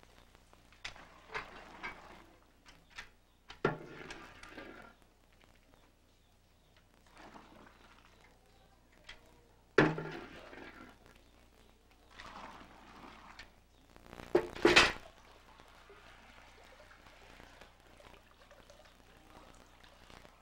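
Intermittent knocks and thumps of kitchen work at a large steaming pot of soy milk, with liquid being poured and sloshed. The sharpest thump comes about halfway through and the loudest burst a few seconds later.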